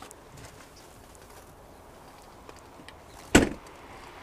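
The rear liftgate of a 2014 Mitsubishi Outlander Sport being closed, shutting with one loud thud near the end.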